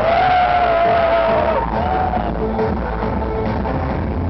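Loud live electronic dance music (EBM/dark electro) over a club PA. A voice holds a long note over it that sags in pitch at its end about a second and a half in, then a shorter note follows.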